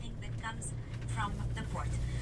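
Low, steady rumble of a moving bus's engine and road noise, heard from inside the bus cabin, with faint voices talking over it.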